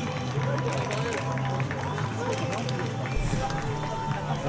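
Scattered, distant voices of players and staff talking on an outdoor football pitch, over a steady low background hum.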